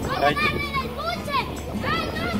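Several short high-pitched cries and squeals, beginning with "¡Ay!".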